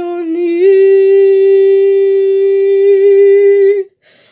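A woman singing a cappella, rising from a short lower note into one long held note with a slight vibrato, which cuts off shortly before the end.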